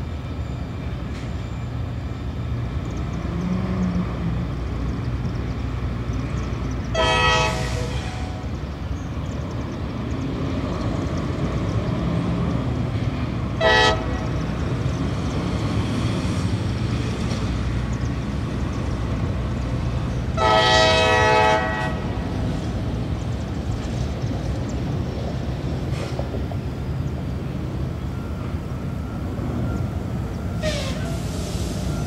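Diesel freight locomotive horn sounding three blasts: a long one about seven seconds in, a short one near the middle, and a longer one about two-thirds of the way through. A steady low rumble from the train runs underneath.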